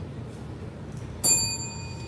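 A small bell struck once about a second in, ringing with a few clear tones and fading within about half a second, over a low room hum.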